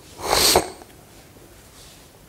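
A man's single short sneeze, about half a second long, cutting off sharply.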